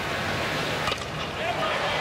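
Stadium crowd noise throughout, with a single sharp crack of a bat hitting a pitched baseball about a second in.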